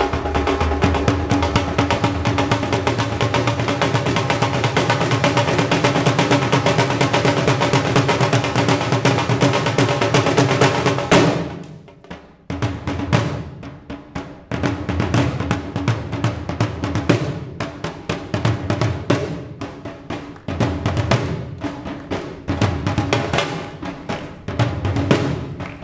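Two Punjabi dhol drums beaten with sticks in a fast, dense roll that stops abruptly about eleven seconds in. After a brief pause the drumming resumes in sparser, separated strokes with short breaks.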